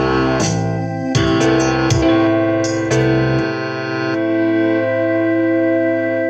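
Piano playing a short run of chords, then holding one long final chord that rings on while its low note fades near the end.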